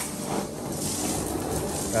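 Hot-water carpet extraction wand drawn across carpet, its suction pulling air and water through the head with a steady rushing hiss.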